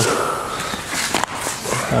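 A car's rear seat bench being lifted and turned over on a tiled floor: fabric and foam handling noise with a soft knock a little after a second in.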